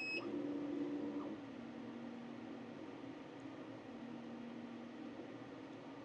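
Thunder Laser Bolt's motors humming steadily as the laser head and rotary trace the outline of the design in a framing pass, the hum dropping to a slightly lower pitch about a second and a half in. A short electronic beep from the machine at the very start.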